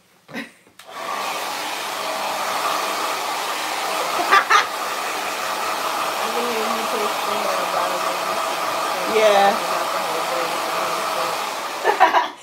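Hand-held blow dryer switched on about a second in and running steadily, a constant rush of air with a faint motor whine, blowing on braided synthetic hair set on flexi rods to set the curls. A voice breaks in briefly twice over it, near four and nine seconds in.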